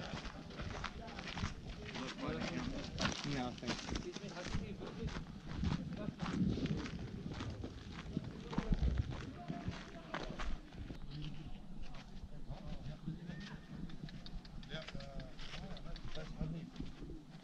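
Indistinct voices of several people talking outdoors, with the tap and scuff of footsteps on a dirt and gravel path.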